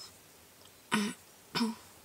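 Two short throat clears from a person, about two-thirds of a second apart.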